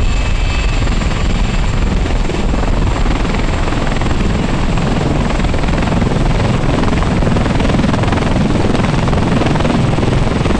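CH-53E Super Stallion heavy-lift helicopter running loud and steady at close range, its rotor and three turboshaft engines carrying it off the deck into a low hover, a little louder in the second half.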